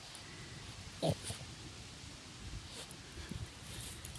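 Boston Terrier sniffing at close range in a few short bursts, the loudest about a second in.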